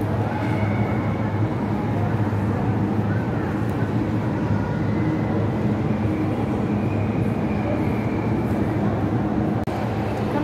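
Steady room noise of a large gallery hall: a constant low hum with a faint murmur of distant voices.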